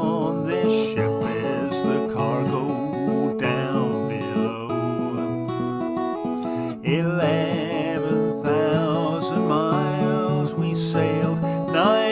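Steel-string acoustic guitar strummed and picked in a folk song, with a man singing over it; the voice drops out briefly a little after the middle, leaving the guitar alone.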